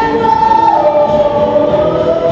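Song from the haunted house's animatronic band show, with long held, choir-like sung notes over the music. The highest held note glides down in pitch about two-thirds of a second in, then slowly creeps back up.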